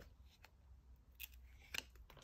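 A few faint clicks of a stiff cardboard board-book page being turned by hand.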